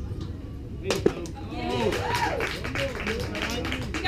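A pitch reaching home plate with one sharp pop about a second in, followed by spectators calling out and clapping.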